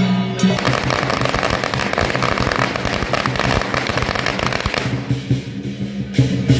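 A string of firecrackers going off in a rapid, continuous crackle that starts about half a second in and dies away near the end, over festival music.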